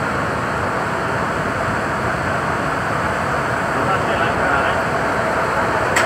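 Heavy rain falling steadily, with a Kawasaki–CSR Sifang C151B metro train pulling into the station under it; a faint tone from the train grows a little stronger near the end.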